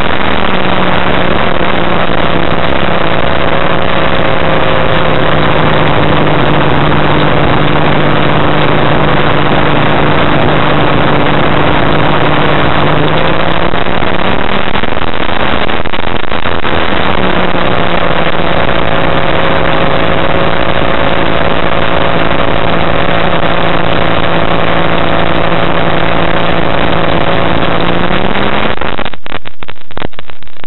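Challenger II ultralight aircraft's engine and propeller running steadily in flight, heard loud from the open cockpit. Its pitch climbs and wavers for a few seconds midway, settles back, and rises again near the end as power is changed.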